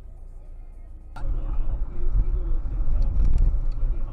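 Low steady hum of a dashcam recording in a car. About a second in it gives way abruptly to much louder low engine and road noise heard inside a moving car's cabin.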